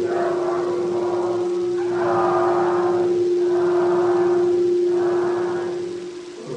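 Buddhist chanting: voices holding one long, steady note while the vowel sounds above it shift every second or two, ending just before the close.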